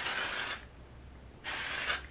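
Aerosol can of Amika Undone Volume and Matte Texture Spray sprayed onto hair in two short hisses, each about half a second long and about a second apart.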